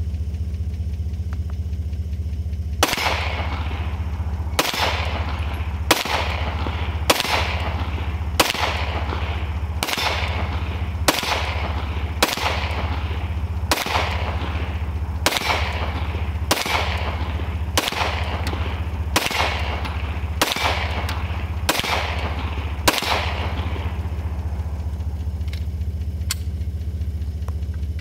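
Handgun fired in a slow, steady string of about sixteen single shots, one every second or so, each followed by a short echo. A steady low hum runs underneath.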